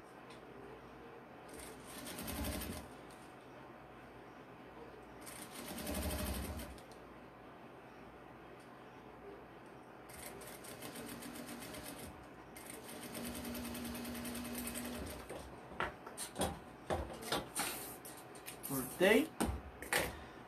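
Industrial lockstitch sewing machine stitching in runs: two short bursts early on, then two longer, steadier runs in the middle, followed by scattered short clicks and knocks near the end.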